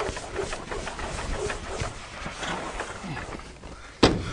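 Blackboard eraser rubbing chalk off a blackboard, a dense swishing noise of quick, irregular strokes.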